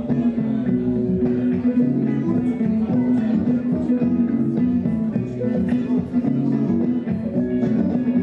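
Guitar music played through a loop station: looped guitar parts layered into a traditional Irish tune, with plucked notes moving over a steady held low note.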